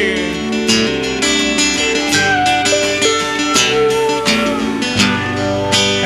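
Live country-rock band playing an instrumental stretch between sung lines, with strummed acoustic guitar, sustained lead notes and a steady drum beat.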